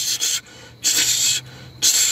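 A man forcefully hissing out breath three times close to the microphone: a short rush, a longer one in the middle, and a third starting near the end, performed as a prophetic act.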